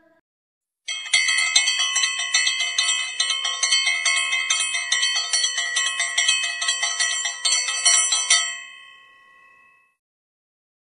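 A bell rung rapidly and continuously, starting about a second in, with quick repeated strikes for about seven seconds before the ringing dies away near the end.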